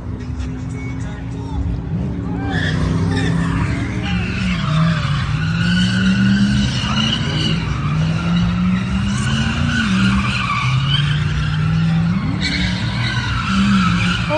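Cars doing donuts: engines revving up and down and tyres squealing, the squeal starting a couple of seconds in and running until near the end.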